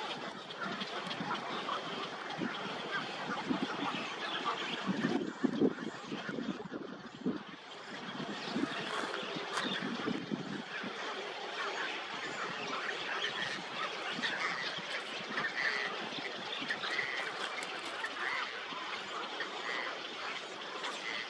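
Many birds calling at once in a dense, overlapping chorus, with a few louder low calls about five seconds in.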